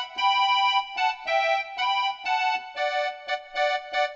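Electronic keyboard playing a melody line with the right hand, mostly one note at a time, two to three notes a second, each note held steady and then cut off.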